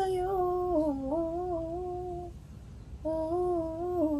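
A voice singing a wordless vocal run, demonstrating an R&B-style riff: a phrase that dips in pitch and settles on a long held note, a short break, then a second phrase that wavers and falls away near the end.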